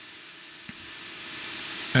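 Steady airy hiss from the paper cutter's blower and main drive running, growing gradually louder, with one faint click about two-thirds of a second in.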